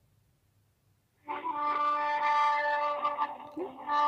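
Call-centre hold music playing over a phone's speakerphone, coming in about a second in after a moment of silence: long held notes, briefly dipping near the end.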